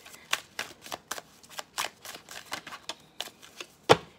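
A tarot deck being shuffled by hand: a run of light, irregular card clicks. It ends with one louder slap near the end as a card is laid on the table.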